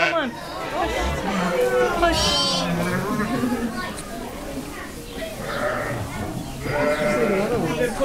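Sheep bleating a few times, a high wavering call about two seconds in and more near the end, from a ewe and her newborn lamb.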